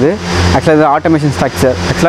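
A person speaking continuously, over a steady low hum.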